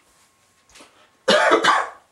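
A person coughing: two loud coughs in quick succession a little past the middle.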